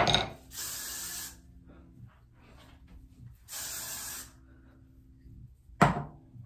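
Aerosol hairspray: two short sprays about three seconds apart, each a hiss of about a second, setting styled hair in place. A loud bump comes at the start and another just before the end.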